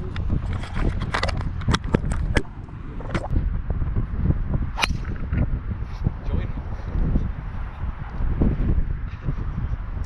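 Wind buffeting the microphone throughout. A string of sharp clicks and knocks in the first couple of seconds comes from a hand handling the camera. About five seconds in comes a single sharp crack: a driver striking a golf ball off the tee.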